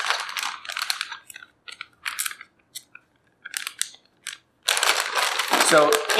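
Clear plastic zip-top bag crinkling and rustling as it is picked up and handled, in scattered short bursts, then a denser, louder spell of crinkling near the end.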